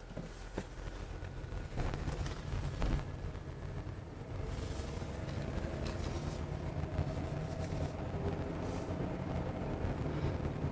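Car engine and tyre noise heard from inside the cabin while driving, a steady low rumble that grows louder over the first few seconds as the car picks up speed. A few light knocks come in the first three seconds.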